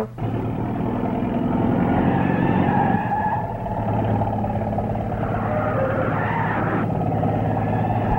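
A truck engine running as it drives up, with tyres skidding.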